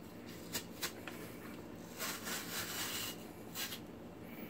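Watermelon slices being pulled out of the rind with a metal squeeze-handle melon slicer: two light clicks of the tool early in the first second, then faint scraping and rubbing of the flesh against the rind and metal, longest about halfway through.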